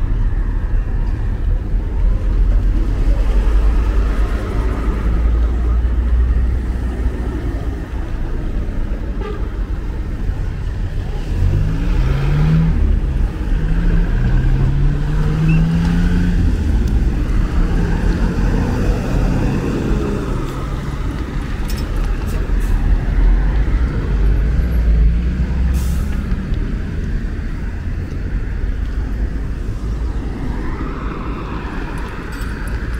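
Street traffic: car and truck engines running and passing, over a steady low rumble, with pitched sounds rising and falling around the middle.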